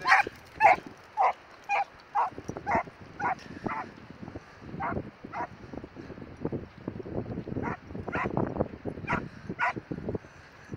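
Sprocker spaniels barking and yipping excitedly: a quick run of sharp barks about two a second, then scattered ones.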